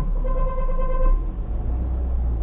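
A car horn sounds one steady note for about a second, over the low rumble of traffic heard from inside a car's cabin.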